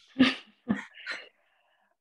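A woman laughing: three short breathy bursts in about the first second, the first the loudest, then a pause.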